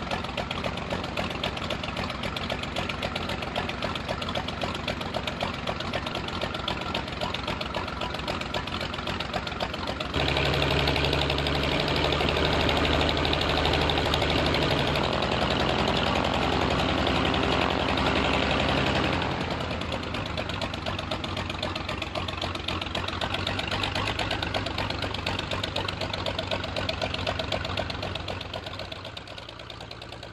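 Percival Prentice's six-cylinder de Havilland Gipsy Queen piston engine idling with its propeller turning. A little after a third of the way in it runs noticeably louder for about nine seconds, then settles back to idle. The sound drops away in the last second.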